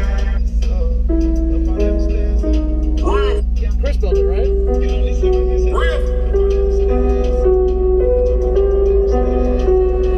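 Loud music played through a car audio system of four Orion HCCA 15-inch subwoofers, heard inside the cabin. A deep, steady bass line dominates throughout, with a melody and vocals over it.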